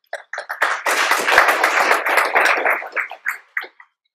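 Audience applauding in a hall. It starts with a few separate claps, swells to a dense patter and thins to scattered claps near the end.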